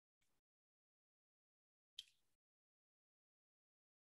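Near silence, broken by one brief faint click about two seconds in.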